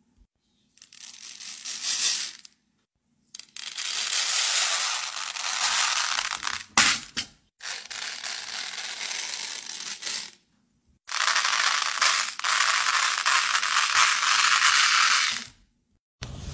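Plastic pin art toy: many plastic pins sliding and clattering through the holes of the clear frame as they are pushed. The sound comes in several stretches of a few seconds each, with short pauses between.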